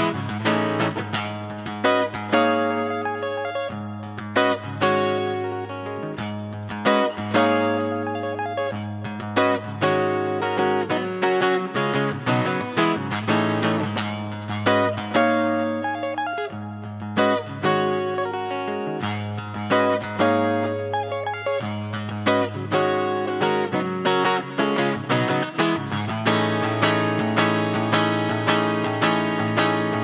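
Semi-hollow-body electric guitar played solo through an amplifier: picked single-note lines and chords over held low bass notes. Near the end the playing turns into fast, even repeated chords.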